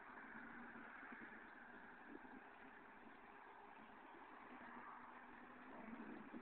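Faint steady running of a 1990 Nissan 300ZX (Z32) V6 engine, barely above near silence.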